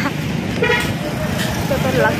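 Busy street traffic with a short vehicle horn toot a little under a second in, over a steady low rumble of engines and road noise.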